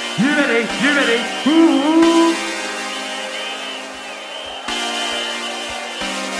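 UK hardcore dance music in a breakdown with the bass filtered out: synth notes swoop up and down in pitch, then settle into held tones.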